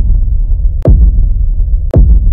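Cinematic intro sound effect: deep booming bass hits about a second apart, each with a quick downward pitch sweep, over a continuous loud low rumble.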